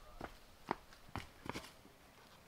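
A handful of short taps and scuffs, about five in two seconds, the sharpest one a little before the middle: climbing shoes and hands on sandstone as a climber pulls onto the boulder.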